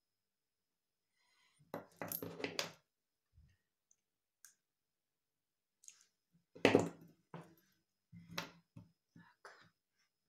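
Small clicks and clinks of mother-of-pearl beads, metal jump rings and pliers being handled on a tabletop, in scattered short bursts, the loudest about two-thirds of the way through.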